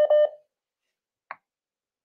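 Two quick electronic beeps from the call-in phone line right at the start, then a single faint click about a second later.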